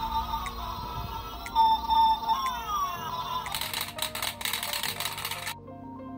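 Electronic toy melody from a musical flashing spinning top's built-in sound chip: high beeping tones with a few falling sweeps. The sound turns busier and noisier about halfway through, then drops away near the end.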